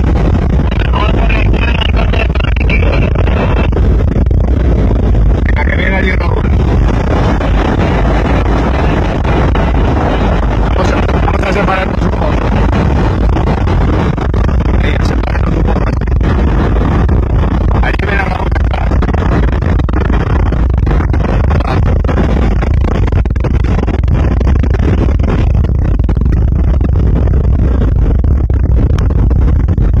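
Steady, loud rumble of a 4x4 driving fast over a dry lakebed, heard from inside the cabin: engine, tyre and wind noise with heavy low buffeting on the microphone.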